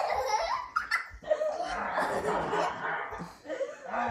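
Young children laughing and giggling, with bursts of laughter throughout.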